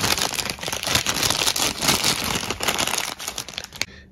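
Paper fried-chicken sleeves crinkling and rustling as a hand handles them, a continuous crackly rustle that stops just before the end.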